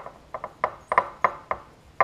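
Table knife spreading margarine across a slice of bread: quick, rhythmic scraping strokes, about three or four a second.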